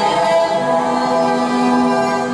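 Live band music with singing: several long notes held together as a sustained chord, a lower note joining about half a second in.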